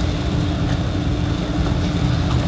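Steady low rumble of the room's background noise with a thin steady hum over it.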